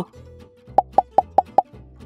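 Five quick cartoon pop sound effects in a row, about a fifth of a second apart, starting a little under a second in, over quiet background music.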